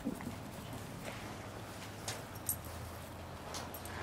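A dog running on grass, its paws padding in a light patter, with a few faint clicks.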